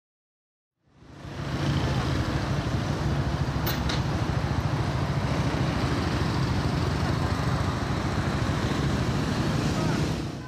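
City street traffic noise: a steady mix of car engines and tyres with a low engine hum, fading in about a second in.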